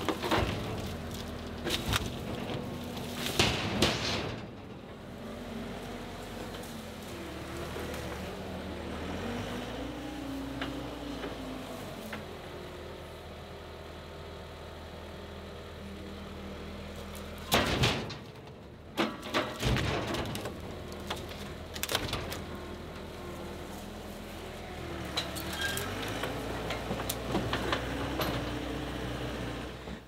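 A John Deere skid loader's diesel engine runs steadily, its pitch rising and falling as the grapple works. Loud knocks of walnut logs land against a steel dump trailer, a few near the start and another cluster a little past halfway.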